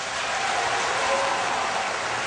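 Large audience applauding steadily after a rousing line in a speech.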